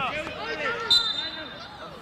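Young players shouting to each other on the pitch, with a sharp thud of a football being struck about a second in, followed by a brief high, steady whistle tone.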